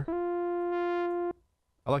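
Sylenth1 software synthesizer playing a single held sawtooth note through a lowpass filter, steady in pitch for about a second and a quarter, then cutting off.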